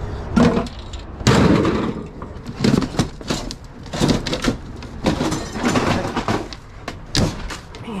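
Irregular knocks, scrapes and rattles of a wooden cabinet panel and a sheet-metal chassis being wrestled apart and lifted out by hand, with the loudest clatter about a second in.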